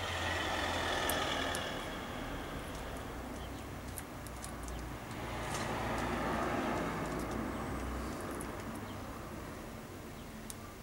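Background noise of a passing road vehicle, swelling and fading twice over a low steady hum.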